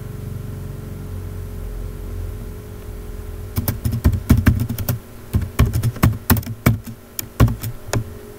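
Typing on a computer keyboard: an irregular run of sharp keystroke clicks that starts about halfway in, after a low rumble.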